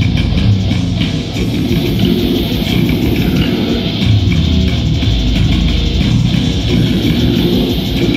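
Live band playing loud and without a break, with electric guitar and bass guitar.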